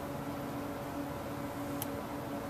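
Steady background hiss with a faint low hum, and one brief faint click near the end.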